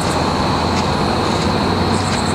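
Road traffic going past close by: a loud, steady rush of tyre and engine noise with a low hum underneath.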